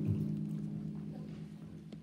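Slow instrumental music: a low held chord that slowly fades away.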